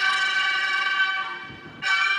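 Lusheng reed mouth organs sounding a sustained chord of several notes, which fades about a second and a half in. A new chord enters sharply just before the end.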